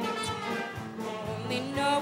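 Live show-choir performance of an up-tempo jazz song: female voices singing over band accompaniment with a steady beat.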